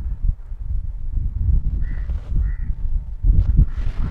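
Wind buffeting the microphone in gusts, with two short, distant calls about two seconds in.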